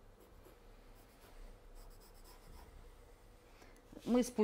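Faint scratching of a pencil drawing lines on paper.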